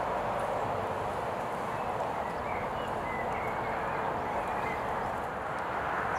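A horse trotting on an arena surface, its hoofbeats soft and muffled under a steady background hiss. A few faint bird notes come through around the middle.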